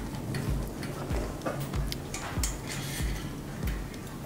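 Background music with a steady beat, over light clicks and taps of a metal bearing press tool being fitted into a bicycle wheel hub.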